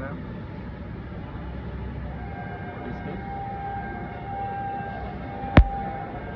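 Steady low workshop background noise, with a steady high-pitched tone coming in about two seconds in and holding. A single sharp click sounds near the end, the loudest event.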